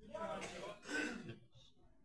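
A person's voice briefly in the first second or so, with no clear words, then quieter.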